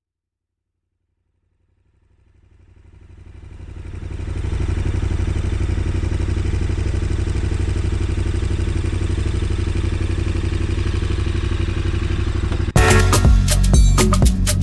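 Motorcycle engine running at a steady cruising speed, fading in from silence over about two seconds and holding a constant, evenly pulsing note. Near the end, music with percussion cuts in abruptly and is louder.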